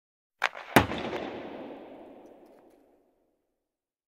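Title-card sound effect: a sharp click, then a loud impact whose noisy, crackling tail dies away over about two seconds.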